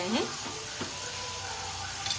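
Green peas, tomatoes and onions sizzling steadily in a non-stick frying pan over medium-high heat, with a wooden spatula stirring at the start and a light tap about a second in.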